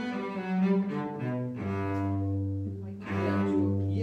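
Solo cello bowed in the closing phrase of a piece: a few shorter notes, then from about one and a half seconds in a long low note, re-bowed just after three seconds and held.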